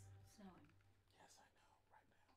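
Near silence: the last of the intro music fades out early on, followed by faint whispery voice sounds.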